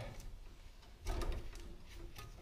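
Wire strippers biting into and pulling the insulation off a black or white house wire, about half an inch. It sounds as a short scrape with a few clicks about a second in.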